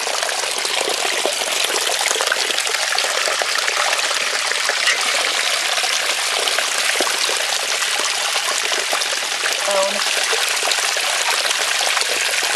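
Creek water trickling and splashing over a rock ledge in a small cascade, a steady rushing sound throughout.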